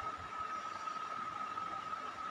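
Faint background noise during a pause in talk: a steady hiss with a thin, constant high-pitched tone.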